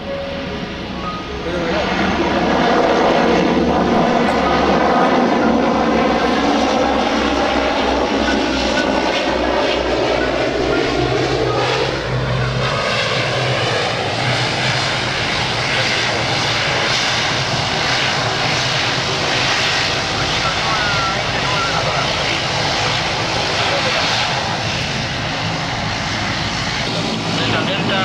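ATR twin-turboprop airliner's engines and propellers running up to high power about two seconds in, then staying loud, with the pitch sliding down as the aircraft moves along the runway past the listener.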